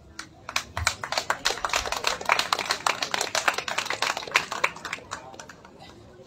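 Small audience applauding: a patter of many hand claps that builds over the first second, holds, then thins out and fades away about five seconds in.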